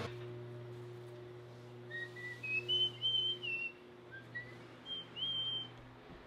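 A person whistling a short run of high notes that climb and waver, over a steady low hum.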